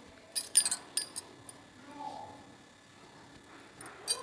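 A few sharp metallic clinks of a steel spatula and kadai on the gas stove's burner grate, bunched between about half a second and a second in, then quiet.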